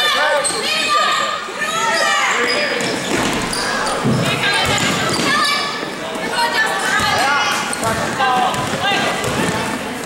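Indoor basketball game sound in an echoing gym: a basketball bouncing on the hardwood floor while many voices shout and call out at once.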